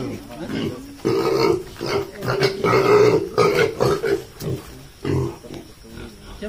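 Domestic pigs grunting in a pen, with people's voices talking over them.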